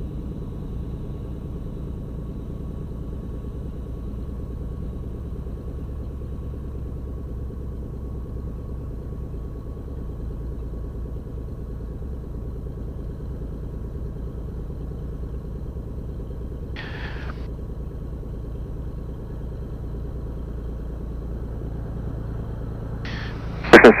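Beechcraft Bonanza's piston engine heard from the cockpit, running steadily at low power as the plane taxis after landing, with a brief hiss about two-thirds of the way through.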